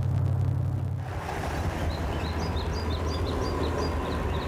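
Steady low rumble of a car driving. After about a second a faint steady whine joins it, and from about two seconds in there is a run of short high chirps.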